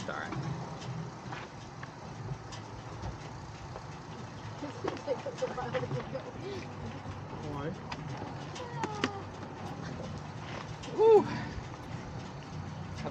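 Indistinct talk among several people over a steady low hum, with one louder voice about eleven seconds in.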